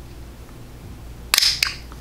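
The lid of a small plastic makeup jar popping open: one sharp snap about a second and a third in, followed by a smaller click.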